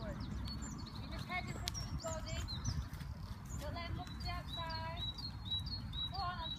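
Birds chirping and singing in short repeated notes, with a run of high chirps in the second half, over a steady low background rumble.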